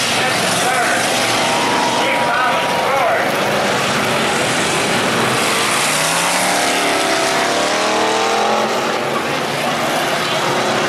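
Engines of demolition-derby-style cars and pickups racing around a figure-8 track, a steady loud din. A wavering whine rises and falls from about six seconds in until near nine seconds.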